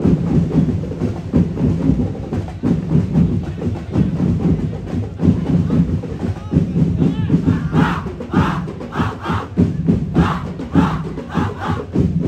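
Festival drum and percussion ensemble playing a fast, dense beat. Over the last few seconds a group of voices shouts in short rhythmic bursts over the drumming.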